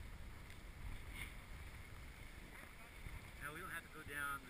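Faint low rumble of wind buffeting an action-camera microphone, with a man's voice starting briefly near the end.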